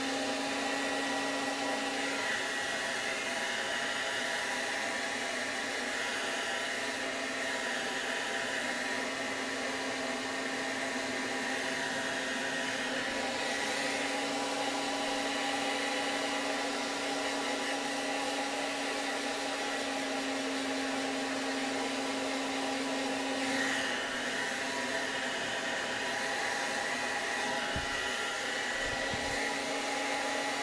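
Handheld hair dryer running steadily, drying damp bangs: a constant rush of air with a steady motor hum.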